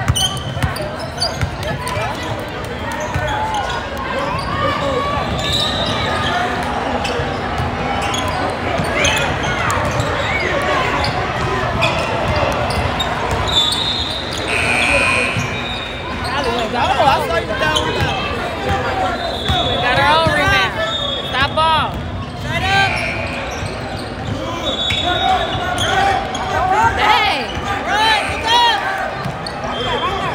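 Basketball being dribbled on a hardwood court in a large gym, with sneakers squeaking now and then as players run and cut, over the voices of players and spectators.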